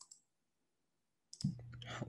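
Dead silence for about a second, then a couple of short clicks just before a voice comes in near the end.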